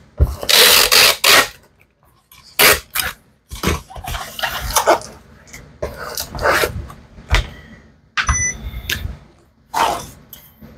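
Packing a cardboard record mailer: a long rasp of packing tape pulled off a handheld tape gun near the start, then shorter tape rasps, scraping and knocks of the package and tools on the desk.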